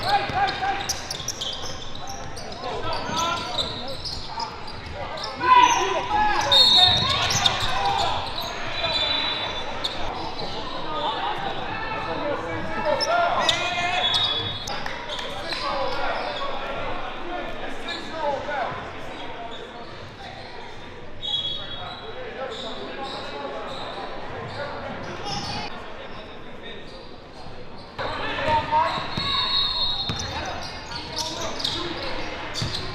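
A basketball being dribbled on a hardwood court amid indistinct voices of players and coaches, echoing in a large gym, with a few brief high-pitched squeaks.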